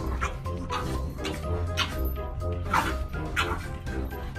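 An otter giving about five short, high-pitched squeaking calls, one after another, over background music.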